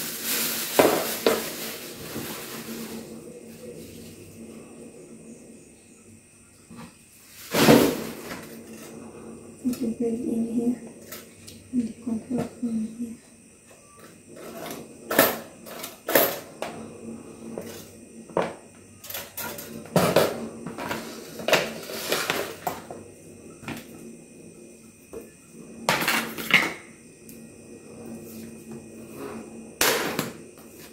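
Plastic wrapping rustling as it is pulled off a two-slice toaster. This is followed by scattered knocks and clicks as the toaster is turned over and handled on a countertop, the loudest about eight seconds in.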